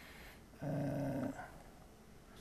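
A man's held hesitation hum, one steady pitch lasting under a second, starting about half a second in.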